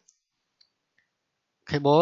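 Pause in a lecturer's speech: near silence with a few tiny faint clicks, then speech starts again near the end.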